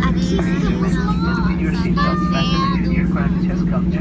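Jet airliner on the runway just after landing, heard from inside the cabin: a steady engine hum holding one pitch over a low rumble.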